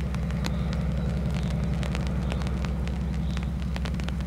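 ST44 locomotive's Kolomna 14D40 two-stroke V12 diesel running steadily while pulling a train: a deep, even, pulsing drone, with scattered sharp clicks over it.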